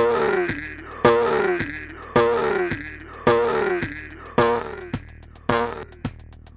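Electronic drum and sampler loop from a Reaktor Blocks patch at 108 BPM. A strong hit comes about once a second, every two beats, each followed by a pitched tone sweeping downward, with lighter hits on the beats in between.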